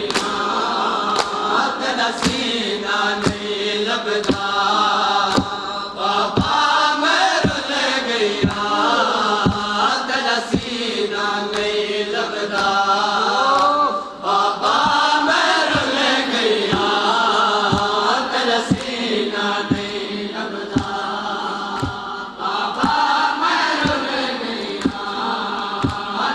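A nauha chanted by a reciter with a group of men, with matam (open hands striking chests) at a steady beat of about one strike a second.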